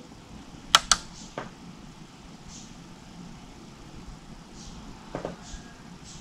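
Quiet room tone with a quick pair of sharp clicks about a second in, a softer click just after, and a few faint clicks near the end.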